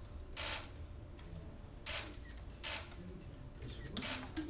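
Camera shutters firing: three short bursts of clicks spread across a few seconds, with another starting right at the end.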